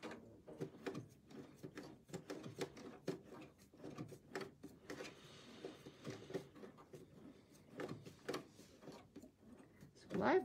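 Bernina B 570 sewing machine stitching a zigzag seam through a bag panel at a slow, uneven pace with its dual feed engaged: a faint run of irregular clicks and mechanical ticking from the needle and feed.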